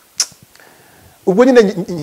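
A man speaking after a short pause, his voice coming in a little past a second in; just after the start there is one brief, sharp hiss.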